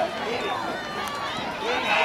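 Many overlapping voices of a football crowd, talking and shouting at once with no single clear speaker, growing louder near the end.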